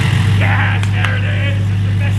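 Cummins turbo-diesel in a Ram pickup, just cold-started and settled into a steady, even idle with a deep rumble.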